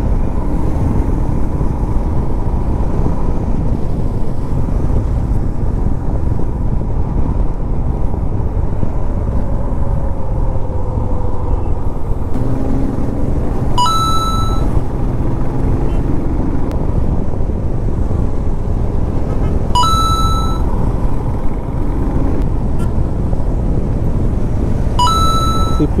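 Royal Enfield motorcycle running at cruising speed on a highway, its engine, tyre noise and wind on the camera microphone making a dense, steady rumble. A short high-pitched electronic beep sounds three times: about halfway through, about six seconds later, and near the end.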